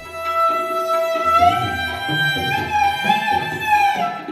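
Sarangi bowed in a long, voice-like held note that slides up a step about a second in and is sustained.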